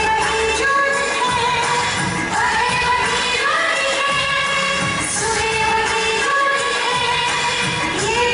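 A song with a voice singing a melody over instrumental backing, at a steady level throughout.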